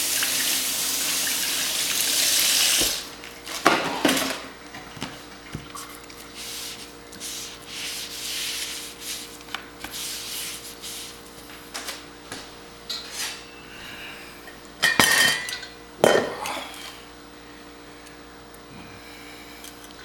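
Kitchen handling sounds: water running for about the first three seconds, then a stainless steel pot and utensils clanking and knocking at intervals, loudest twice around the middle and again near three quarters in, over a faint steady hum.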